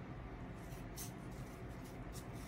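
Scissors cutting quietly through a folded stack of green craft-foam sheets, with one short, sharper snip about a second in.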